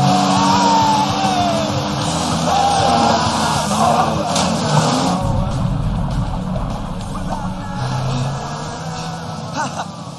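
Action-film soundtrack: music played over the running engine and spray of a jet ski, with a brief sharp splash-like burst a little after four seconds. A laugh comes right at the end.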